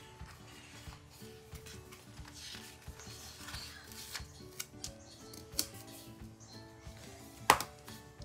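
Paper rustling and light clicks as a sticker sheet is handled and a sticker peeled off and placed, with one sharp tap near the end, over soft background music.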